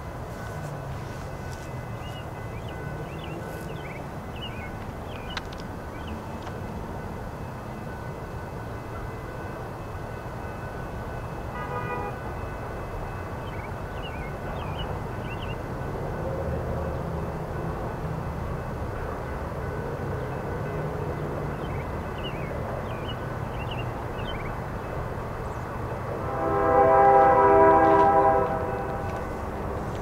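Approaching Norfolk Southern diesel freight train: a steady low locomotive rumble, a brief horn toot about twelve seconds in, then a loud horn blast of about two and a half seconds near the end.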